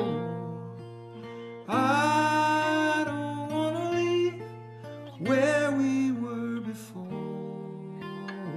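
A man singing a slow song, accompanying himself on a strummed acoustic guitar. Two sung phrases begin about two seconds and about five seconds in, with the guitar ringing on between them.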